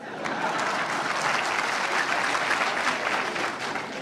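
An audience applauding, a dense steady clapping that swells just after it starts and eases a little near the end.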